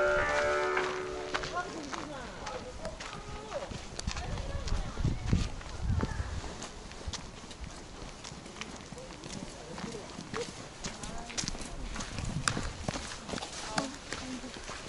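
Footsteps crunching along a packed sandy path as someone walks, with the chatter of other visitors in the background. A short run of pitched tones, falling in steps, sounds in the first second or so.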